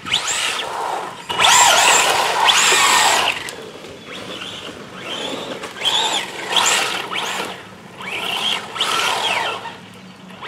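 Brushless electric motor of a hopped-up Traxxas rally RC car whining as it is revved hard again and again, its pitch rising and falling with each burst of throttle. The loudest stretch, about one to three seconds in, comes with a rush of noise from the tyres spinning on loose grit.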